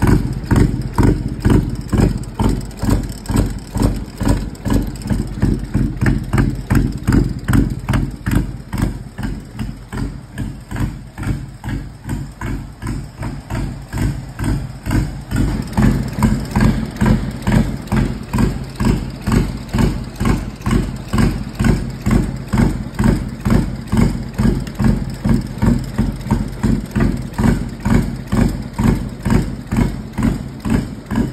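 Kohler three-cylinder diesel engine from a Gravely JSV3000 side-by-side idling, with a steady, even pulsing of about two to three beats a second; it runs a little louder from about halfway.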